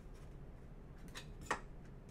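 Quiet room with a steady low hum and a few faint clicks, the sharpest about a second and a half in.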